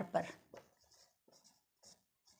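Marker pen writing on a whiteboard: a few short, faint scratchy strokes as letters are drawn.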